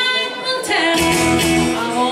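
Live band playing a song: a woman singing lead over guitar and keyboard. The low end drops out for about the first second and comes back in about a second in.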